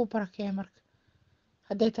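Speech only: a voice speaking two short bursts with a pause of about a second between them.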